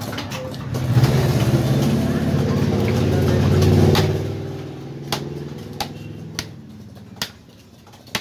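A motor vehicle's engine running close by, swelling over about three seconds and then fading away. As it fades, a heavy fish-cutting knife strikes the wooden chopping block in five sharp knocks, under a second apart.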